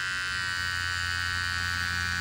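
Cordless electric animal hair clipper buzzing steadily as it shaves long faux fur pile down close to the knit backing.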